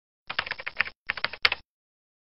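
Computer-keyboard typing sound effect: two quick runs of key clicks, the second ending in one sharper click.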